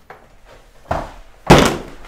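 Two heavy thuds about half a second apart, the second the loudest with a short ring: a person clumsily knocking into a table.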